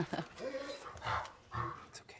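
A large black dog making a few short, quiet vocal sounds while being held back, agitated.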